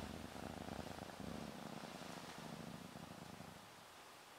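A cat purring faintly in pulses under a second long. The purr fades out near the end.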